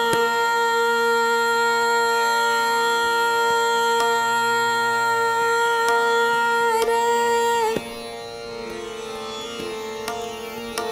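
Woman singing Hindustani classical khayal in raag Miyan ki Sarang, holding one long steady note for nearly eight seconds over a tanpura drone and harmonium. The note ends near the end, leaving the softer drone sounding.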